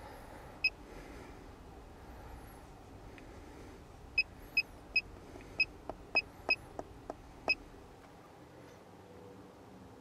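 Handheld OBD2 scan tool (NEXPEAK NX501) giving short electronic key-press beeps, about eight at uneven intervals, with a few soft button clicks, as its menus are stepped through to erase the stored trouble codes.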